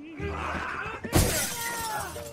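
A sudden loud crash of something breaking and shattering about a second in, over background music.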